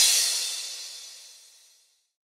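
The final crash cymbal of an electronic dance track ringing out after the beat stops, fading away to silence within about a second and a half.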